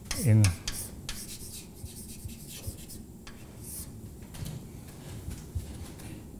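Chalk scratching on a blackboard in a run of short, irregular strokes as someone writes.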